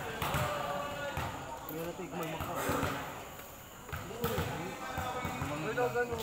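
A volleyball bouncing several times on a concrete court, with players' voices and calls around it.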